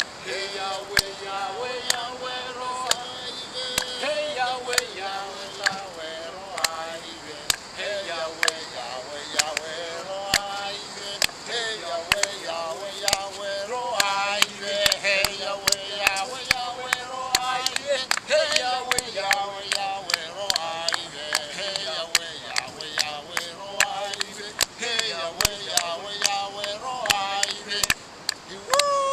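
Futuna Island tuna-catch celebration song: a group, mostly men, singing together in long, gliding phrases over sharp rhythmic beats about twice a second.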